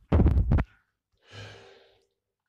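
A person's breath close to the microphone: a short, loud burst of breath with a few crackles, then about a second later a softer exhale like a sigh that fades away.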